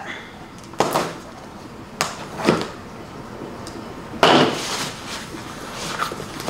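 Small cardboard shipping box being opened by hand: short scrapes and rustles of cardboard flaps and tape about one, two and two and a half seconds in, and a longer, louder rustle about four seconds in.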